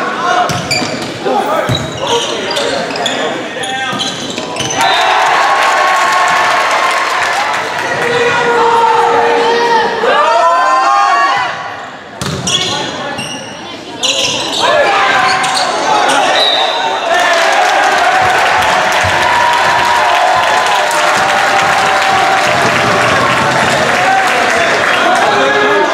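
Volleyball being served and hit in a gymnasium, with sharp smacks of the ball in the first few seconds. Then spectators and players shout and cheer through the rally. The noise dips briefly around twelve seconds and swells again.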